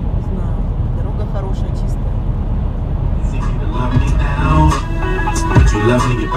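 Steady low road and engine rumble heard inside a moving car. About three seconds in, music with a beat starts up over it.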